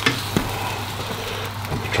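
Egg omelette frying in a pan with a steady sizzle, with a couple of sharp clicks near the start as the spatula works the pan.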